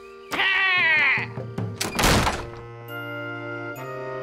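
A short high, wavering call, then a loud wooden thud about two seconds in as the shed door is shut. Gentle background music follows.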